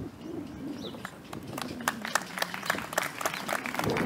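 Scattered hand-clapping from the audience, sparse at first and growing denser toward the end, with a dove cooing in the background.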